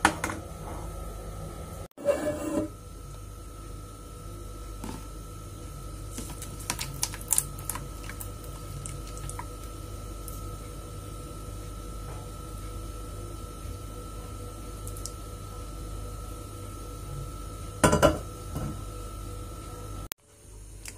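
Scattered light clicks and taps of kitchenware, a steel saucepan against a plastic container, over a steady low hum with a faint high whine.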